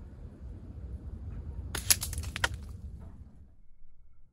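Wind rumbling on the microphone, dropping away near the end, with a quick run of about five sharp clicks about two seconds in.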